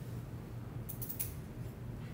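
A quick cluster of light clicks about a second in, with a couple more near the end, over a steady low hum.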